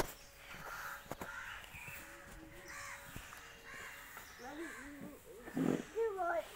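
Faint, repeated short bird calls in the background, with a louder burst of sound near the end.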